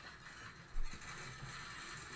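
Faint audio of a TV news clip playing through computer speakers: a steady hiss of hall ambience from the ceremony footage, with one soft thump just under a second in.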